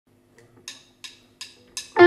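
Count-in clicks, most likely drumsticks struck together: four sharp clicks about three a second over a faint amplifier hum, the electric guitar coming in right at the end.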